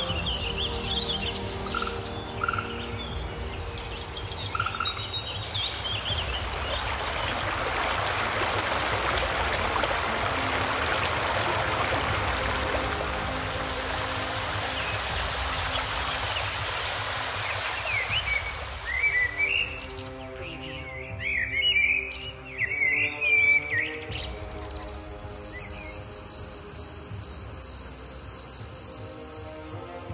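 A sequence of nature ambience samples over a soft music bed. Birds chirp first, then a steady rushing noise swells and fades. Birds chirp again more loudly, and about three-quarters of the way through an insect chorus of regular pulsing chirps takes over.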